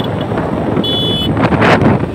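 Wind buffeting the microphone of a moving motorcycle, mixed with road and engine noise, rising in gusts. A short, steady, high-pitched tone sounds a little after the middle.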